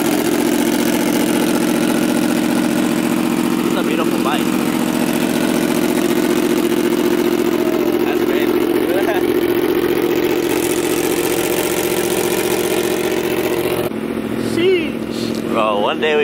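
A vehicle engine idling steadily at an even pitch, with voices faintly behind it. It stops abruptly near the end, where nearby talk takes over.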